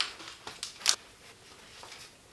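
Short clicks and knocks of a float-tube rod holder's parts being fitted together by hand, with the sharpest click a little under a second in.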